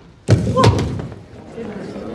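A single heavy thump about a third of a second in, echoing in a large hall, followed by the low murmur of a seated banquet crowd.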